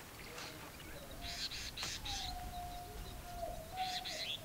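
Faint birds chirping: a quick run of short high notes about a second in, another near the end, with a thin steady tone through the second half.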